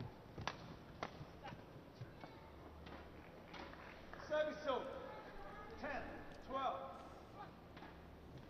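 Rackets strike a shuttlecock in a quick badminton exchange, sharp clicks about half a second apart. After the rally, two short high-pitched voice calls are the loudest sounds.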